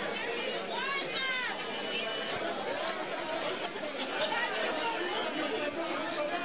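A crowd of many people talking at once, a dense babble of overlapping voices with now and then a louder voice rising above it.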